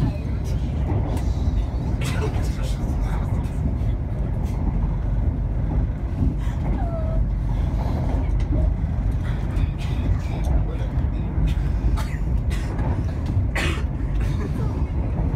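Steady low rumble of a moving ScotRail passenger train heard from inside the carriage, with scattered clicks and rattles, the sharpest near the end.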